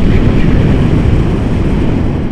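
Wind buffeting an action camera's microphone during a paraglider flight: a loud, steady rush of noise, heaviest in the low end.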